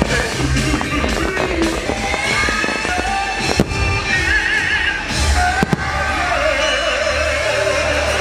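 Fireworks show music with a singing voice, mixed with the bangs and crackle of aerial fireworks. Two sharp bangs stand out, about three and a half and almost six seconds in.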